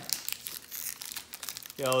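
Foil wrapper of a Pokémon TCG booster pack crinkling and tearing in the hands as it is opened, a run of quick irregular crackles.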